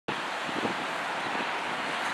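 Steady, even hiss of outdoor background noise, most like wind on the microphone.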